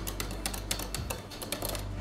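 A hand wire whisk clicking rapidly against the inside of a stainless-steel saucepan, stirring chocolate into hot cream for a ganache. The clicks run at about ten a second and thin out and fade near the end.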